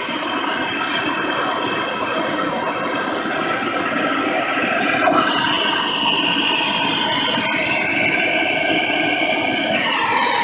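Handheld MAP-gas torch flame burning steadily with a hiss, played on molten silver as it is poured into a mold. About halfway a higher whistle-like tone joins the hiss.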